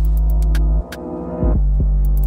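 Instrumental hip-hop beat: a long, deep bass note with hi-hat ticks over it. The bass drops out just under a second in and comes back about half a second later.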